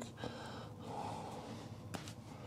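Faint close breathing, then a single sharp click near the end as wire cutters snip through an electrical wire being trimmed back.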